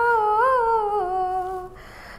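A woman singing unaccompanied, holding one long note that wavers and slides gently down, then a short breath near the end.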